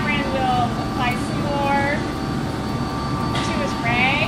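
Indistinct talking in short phrases over a steady background hum with a few constant thin tones.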